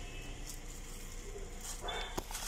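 Quiet steady hum inside a car cabin, with a brief rustle of food wrapping near the end.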